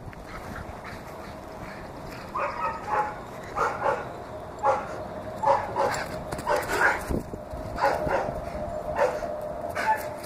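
A dog at play making short yips and whines, repeated about once a second from about two seconds in.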